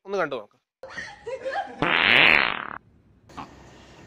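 A fart sound about a second long, starting and stopping abruptly; it is the loudest sound here and comes after a few words of speech.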